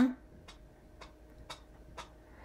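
Faint, evenly spaced ticks, about two a second, over quiet room tone.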